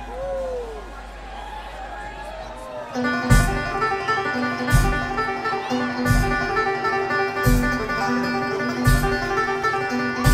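Live bluegrass band playing: banjo, mandolin, acoustic guitar and electric bass. A sparse, quieter passage gives way about three seconds in to the full band, with a steady drum beat landing about once every second and a half.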